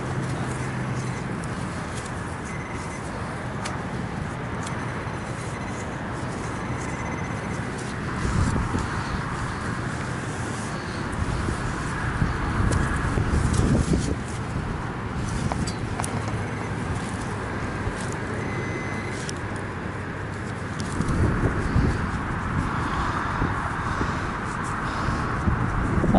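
Soil being scraped and dug out of a small hole with a shovel and gloved hands, over steady wind noise on the microphone. The noise swells in two louder spells, about a third of the way in and again near the end.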